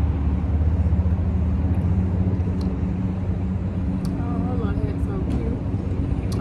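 A steady low mechanical hum, like a vehicle engine running, over outdoor street ambience. A few light clicks come in the middle of it, and faint wavering voices or chirps are heard near the end.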